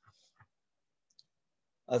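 A few faint, sparse clicks in a pause, then a man's voice starts just before the end.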